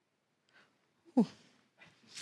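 Quiet room tone with one short vocal sound, falling in pitch, a little past a second in.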